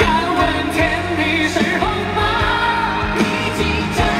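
Live concert music: a band playing a pop song with a male lead vocal.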